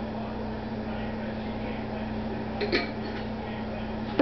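Steady hum of a running appliance, low and unchanging, with one brief clink about three-quarters of the way through.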